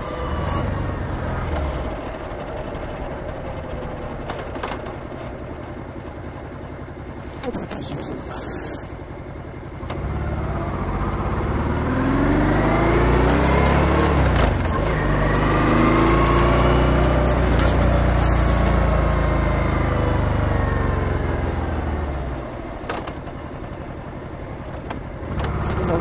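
Honda ST1300 Pan European's V4 engine running under way with wind rush. From about ten seconds in it grows louder, its pitch climbing, breaking off near the middle, climbing again and then falling away a few seconds before the end.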